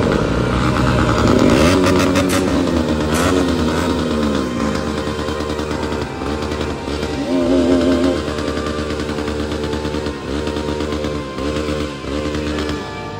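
Motorcycle engines running among a group of stopped sport bikes, blipped several times so the pitch rises and falls.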